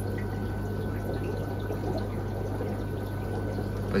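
Aquarium filtration running in a fish room: steady water splashing and bubbling over a steady low hum.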